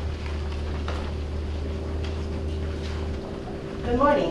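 A low, steady rumble with faint scattered knocks, cutting off about three seconds in; a woman's voice starts at the very end.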